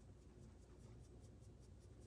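Faint, quick scratchy strokes of a makeup brush's bristles rubbing on skin, about six a second, over near silence.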